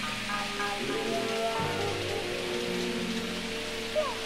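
Hip-hop instrumental backing music: held pitched notes changing at a steady pace over a steady hiss, with no vocals.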